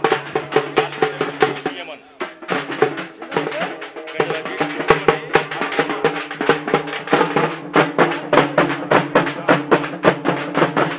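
Large double-headed drums beaten with sticks by a group of drummers in a fast, driving rhythm, over steady held melodic notes. The playing drops briefly about two seconds in, then comes back louder.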